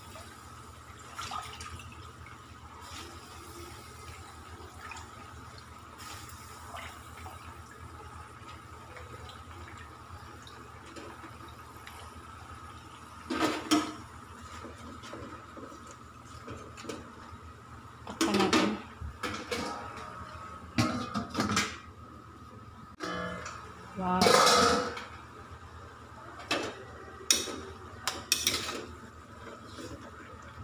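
Kangkong (water spinach) cooking in a metal wok with a steady hiss, while a spatula scrapes and clanks against the pan several times in the second half.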